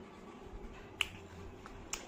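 Two short, sharp crackles about a second apart, the first the louder: a crisp fried puri shell cracking as it is picked up from the plate and handled.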